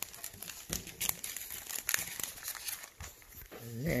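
Plastic packaging crinkling and rustling as a meal pouch in its plastic heater bag is handled and set down on a tray, in irregular rustles with a few sharper clicks.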